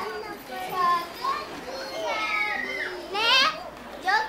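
Children's high-pitched voices calling out and chattering at play, with one loud rising shout about three seconds in.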